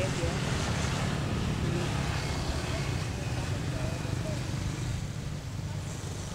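Steady low outdoor background rumble with a few faint, distant voices.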